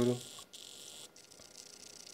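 A voice trails off at the very start, then only a faint steady hiss with a thin high whine remains: background room tone.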